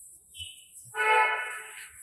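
A single steady horn-like tone, rich in overtones, sounds for about a second, starting about a second in. A shorter, higher tone comes just before it.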